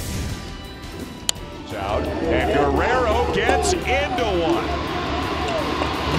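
A baseball bat hitting a pitch for a home run: one sharp crack about a second in. It is followed by louder, excited voices over background music.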